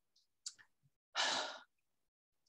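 A person's short breathy exhale, a sigh close to the microphone, about a second in, after a faint click.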